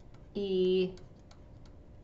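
Light, scattered clicks of a stylus tip tapping on a tablet screen while letters are handwritten, with a single drawn-out spoken letter "E" about half a second in.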